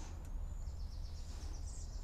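Small birds chirping, with a quick run of high chirps about midway, over a steady low rumble of outdoor background noise.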